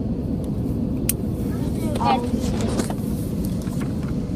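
Steady low cabin noise of an airliner in flight, the engine and air noise holding an even level throughout. A single sharp click comes about a second in, and a voice is briefly heard near two seconds.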